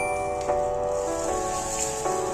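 Background music: soft, sustained chords whose notes change every half second or so, over a steady high hiss.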